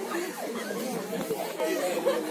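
A group of schoolchildren chattering at once, several voices overlapping with no one voice standing out.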